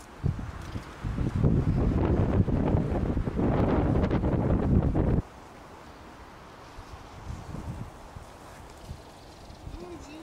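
Wind buffeting the microphone, a loud rough rumble that cuts off suddenly about five seconds in and leaves only faint outdoor background.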